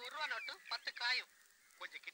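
A man's voice in film dialogue, speaking fast with a strongly rising and falling pitch for about a second, then a short burst again near the end.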